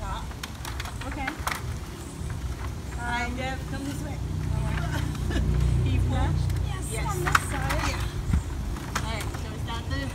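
Indistinct voices talking in snatches over a steady low rumble, with a few light knocks.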